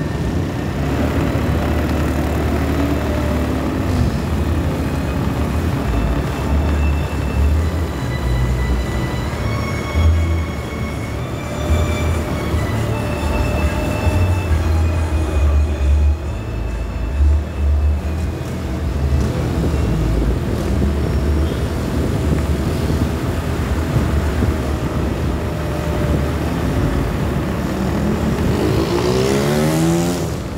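Motor vehicle running along a street: a steady low rumble of engine and road noise that swells and dips. Near the end an engine revs up in a rising whine.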